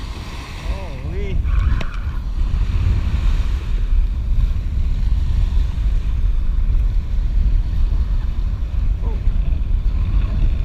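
Wind buffeting the microphone in a steady low rumble, over small waves washing onto a sandy beach.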